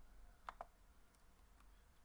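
Near silence broken by two quick clicks about half a second in, then a few fainter ticks: clicking at a computer while editing text.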